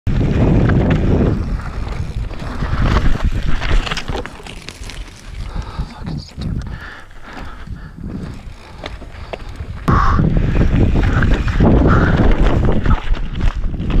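Downhill mountain bike ridden fast over a dry, rocky dirt trail: wind rushing over the bike-mounted camera's microphone, with the tyres and bike rattling and knocking over rocks and bumps. Loud at first, quieter for a few seconds in the middle, then loud again from about ten seconds in.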